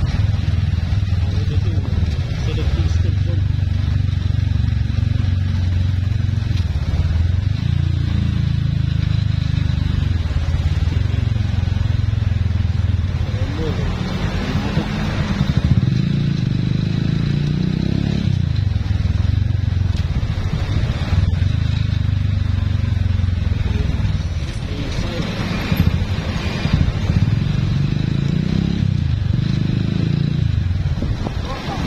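Motorcycle engine running as the bike rides along, its pitch rising and falling several times with throttle and gear changes.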